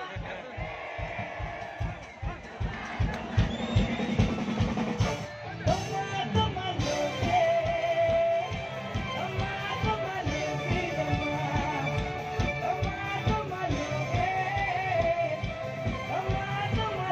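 Live band playing through the PA: drum kit keeping a steady beat under bass and electric guitar.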